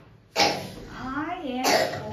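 A person coughs, then makes a wordless voiced sound whose pitch rises and falls, with a second cough-like burst near the end.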